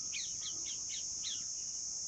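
A chorus of cicadas droning steadily at a high pitch. Over it a small bird gives a quick run of about five short, falling chirps in the first second and a half.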